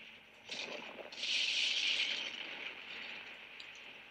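A storm sound effect from a film soundtrack: a hissing rush like rain or wind, with a short surge about half a second in, then a louder swell that fades away.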